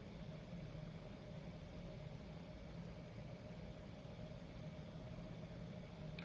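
Faint, steady low hum of background room tone.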